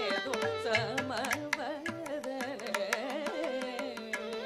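Live Carnatic music: a woman's voice sings in ornamented, gliding phrases, shadowed by a violin, over a steady tanpura drone, with frequent mridangam and ghatam strokes.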